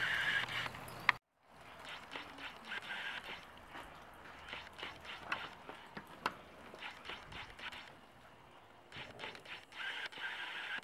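Handling noise from a camcorder being moved and set down: scattered light clicks and knocks, coming after a brief dead drop-out about a second in.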